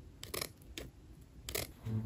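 Scissors snipping through sheer black fabric: a few short, separate cuts.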